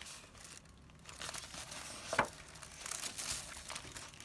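Paper pages of a handmade junk journal being handled and turned, rustling and crinkling, with one sharp crackle about halfway through as a page flips over.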